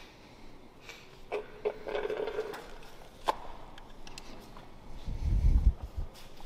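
A few sharp clicks and light knocks of parts being handled, then a loud low rumble near the end.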